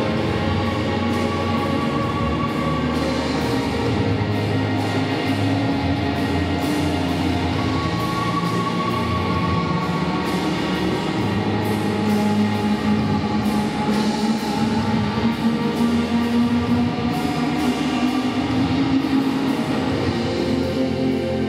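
Live rock band music with pipe organ: a drum kit keeping a steady beat and guitar over long held chords.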